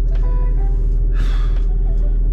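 Steady low rumble of a car engine idling, heard inside the cabin. About a second in, a man gives one breathy puff of air.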